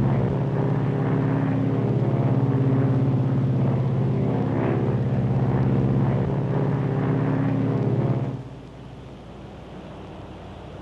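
Lockheed Super Constellation's four radial piston engines and propellers droning steadily in flight, with a fine pulsing beat. About eight seconds in, the sound drops suddenly to a much quieter hum.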